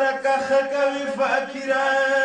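A male voice chants a Pashto noha, a Shia lament, in long held notes, broken briefly between phrases.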